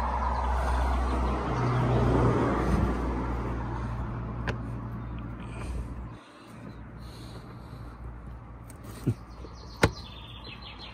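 A motor vehicle engine running with a steady low hum that cuts off abruptly about six seconds in. Fainter handling noise follows, with a few sharp clicks near the end.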